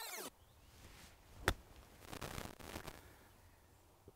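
A 54-degree wedge strikes a golf ball on a short chipped approach, one sharp click about one and a half seconds in. A brief faint rushing hiss follows.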